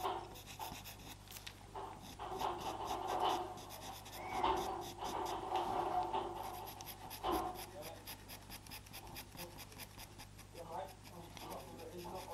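Faber-Castell Pitt pastel pencil making quick, short strokes on Pastelmat paper: a light scratching repeated several times a second.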